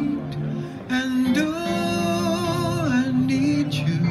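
A man singing live into a microphone over recorded accompaniment, a ballad. After a short breath he sings a long held note that steps down to a lower one near the end.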